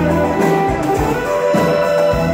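Live blues band playing electric guitars, bass and drums, with an amplified harmonica held to the microphone over the top.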